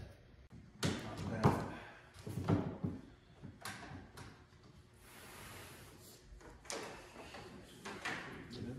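A run of separate knocks and thuds as a long piece of angle trim is handled and laid along the edge of a foam-board sign. The loudest knock comes about one and a half seconds in, with quieter ones after it.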